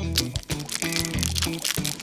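A chocolate bar's wrapper crinkling with many small crackles as it is unwrapped by hand, over background music.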